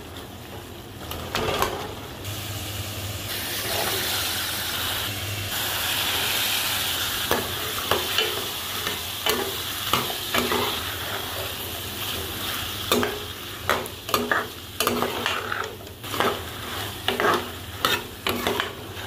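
Tomato-onion masala sizzling in a metal pan while a metal spoon stirs it. From about seven seconds in, the spoon scrapes and knocks against the pan again and again as potatoes and peas are stirred through.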